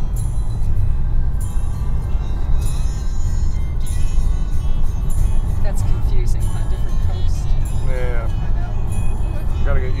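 Steady low road and engine rumble inside a car's cabin at freeway speed, with music playing over it.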